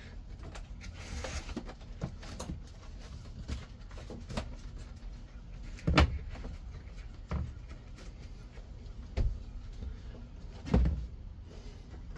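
Scattered knocks and clunks of hard parts being handled around the steering column and dash area of a stripped car cabin, loudest about six seconds in and again near the end.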